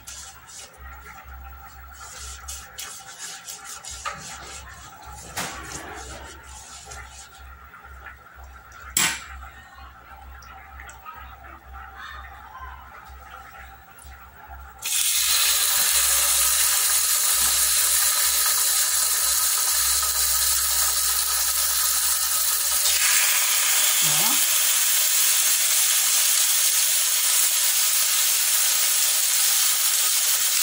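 Raw pork chops sizzling steadily in hot oil in a Mondial electric multicooker pan. The sizzle starts suddenly about halfway through, when the first chop goes in. Before that there are only light clicks and one sharp click.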